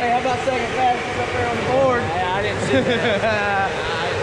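People's voices talking over a steady background din at an indoor go-kart track.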